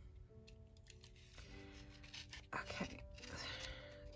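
A utility knife blade scraping through the glued paper edge of a watercolor block to free the top sheet. The cutting starts about two and a half seconds in, over faint background music.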